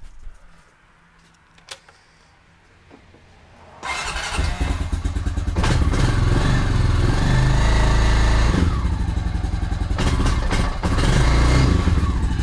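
A 2006 Honda Rancher ES 350 ATV's single-cylinder four-stroke engine is cold-started and catches about four seconds in. It then runs steadily through its stock exhaust.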